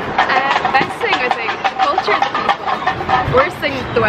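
Speech: people talking in conversation, answering a question.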